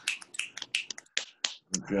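Several people snapping their fingers as applause for a poem just finished: a quick, irregular patter of sharp snaps.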